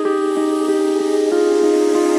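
Background music: a sustained synth chord with a soft plucked note repeating about three times a second, the chord changing a little past halfway.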